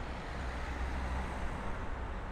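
Street traffic: cars driving past close by over a steady low rumble, swelling slightly as one passes about a second in.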